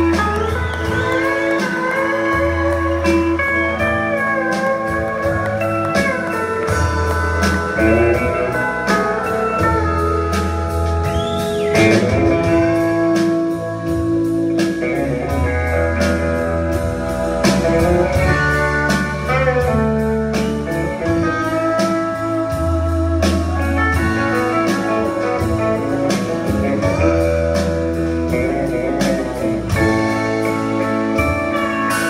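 Live country band playing an instrumental break with no singing: pedal steel guitar with gliding, sustained notes and electric guitar, over bass guitar and drums.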